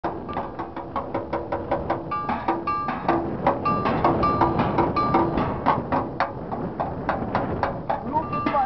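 Scrap metal played as percussion in a live jam: fast, steady beating of about five strikes a second, some pieces ringing briefly at clear pitches.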